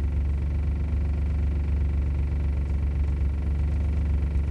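A buggy's engine idling steadily: an even, low rumble with no change in speed.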